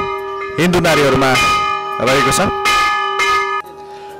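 Temple bell struck several times, its ring holding on between strikes, with voices of the crowd over it.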